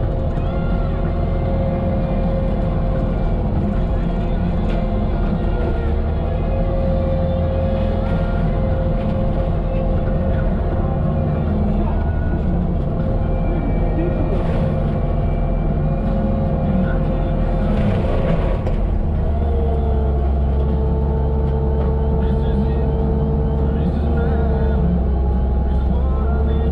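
Bobcat T650 diesel skid steer running a Diamond disc mulcher head into brush: a steady engine and hydraulic drone with a held whine from the spinning disc. About 19 seconds in, the whine drops slightly in pitch and the low drone grows stronger. Music with vocals plays over it.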